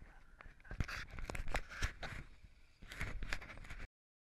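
Irregular close knocks, scuffs and rustling right on the microphone, typical of a camera being handled. It comes in two clusters and cuts off abruptly just before the end.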